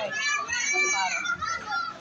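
Children in the crowd yelling in high voices, dying away near the end.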